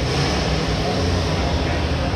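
Steady low rumble of crowd-and-machinery background noise, with faint distant voices.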